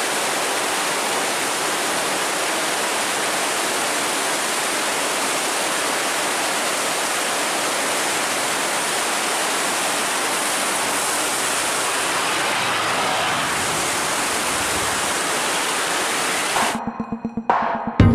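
Steady rushing of water pouring through an open river sluice gate. About a second and a half before the end it cuts abruptly to electronic music with a beat.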